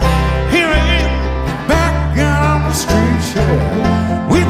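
Live bluegrass band playing: upright bass holding low notes under acoustic guitars, with a lead line that slides in pitch.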